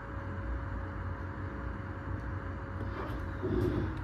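Glow-worm Easicom2 28c combi boiler's fan and burner running steadily, with a faint steady whine that stops shortly before the end, as the boiler is rated down from maximum to minimum in service mode.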